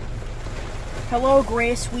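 Steady low rumble of a car's cabin noise, with a boy's voice starting about a second in.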